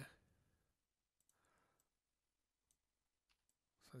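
Near silence with a few faint, separate computer-mouse clicks and a soft breath about a second in.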